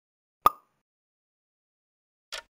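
A single short pop sound effect, the kind of cartoon plop an edited quiz lays over a screen transition, sounding once about half a second in.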